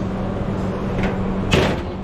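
A stainless-steel pot lid clanks once against the metal pot or counter about one and a half seconds in, ringing briefly, with a lighter click just before it. A steady low hum runs underneath.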